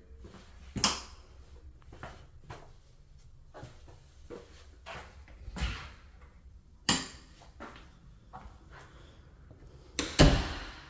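Footsteps and light knocks on a hard floor in an empty room: soft, irregular taps about every half second to second, with two louder sharp knocks, about a second in and about seven seconds in.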